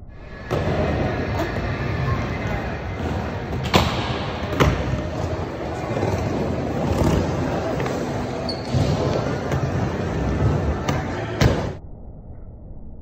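Skateboard wheels rolling and rumbling around an indoor skate bowl, with a few sharp clacks of the board hitting the surface, one near the end, and voices echoing in a large hall.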